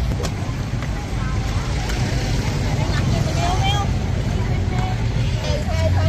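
Indistinct voices and chatter of a crowd walking past, over a steady low rumble.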